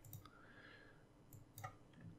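Near silence with a few faint computer mouse clicks: one just after the start and two more about a second and a half in.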